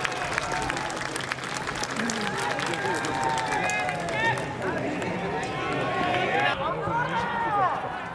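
Several men shouting long drawn-out calls across an open ballpark, overlapping one another, with the loudest calls near the end, and scattered hand claps in the first half.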